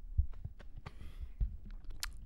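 A few dull low thumps and faint clicks from a handheld microphone being moved in the hand, during a pause in speech.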